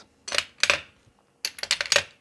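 Light metallic clicks and clinks from hand tools and an aluminium setup gauge being handled on a workbench. There are two single clicks in the first second, then a quick cluster of clicks near the end.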